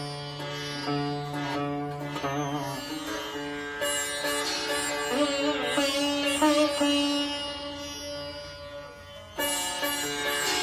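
Sitar played solo: plucked melodic notes, several sliding up and down in pitch and wavering as the string is pulled along the fret. The notes die away shortly before the end, then a loud fresh stroke sounds.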